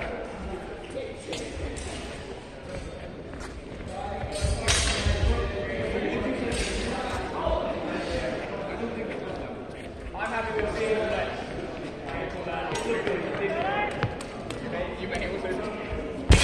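Indistinct voices echoing in a large sports hall, with scattered sharp knocks and thuds from a longsword fencing bout, the fencers' footwork and weapon contacts.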